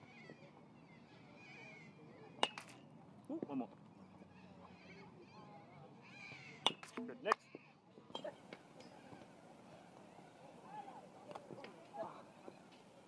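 Baseball bat hitting front-tossed balls in a batting cage: a sharp crack about two seconds in, then two more close together about seven seconds in.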